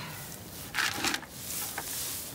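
Rustling and scuffing in straw bedding, with a louder rustle about a second in.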